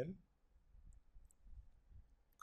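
A couple of faint, short computer mouse clicks over quiet room noise, as a folder is opened in File Explorer.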